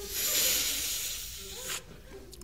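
A person taking a long, sharp drag on a lit marijuana joint: a breathy hiss of air drawn in for nearly two seconds, easing off and then stopping suddenly.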